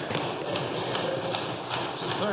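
Legislators thumping their wooden desks in applause: a dense, steady run of many overlapping knocks.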